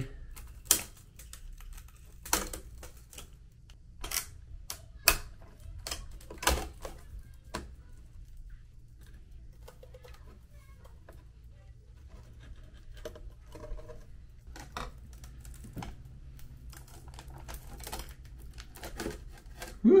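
Cracked iMac front glass panel being pried up and lifted off with suction cups: scattered sharp clicks and ticks of glass, crowded in the first several seconds and sparser after, over a faint steady hum.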